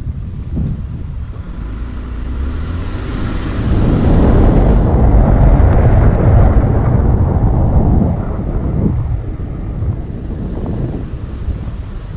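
Wind rushing over a GoPro's microphone with the low rumble of a moving car. It swells to its loudest in the middle as the car gathers speed, then eases off.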